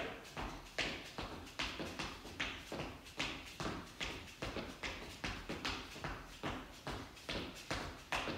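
Footfalls of two people jogging in place on a hard floor: a steady rhythm of about two to three steps a second.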